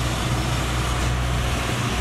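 Construction machinery engine running with a steady low rumble.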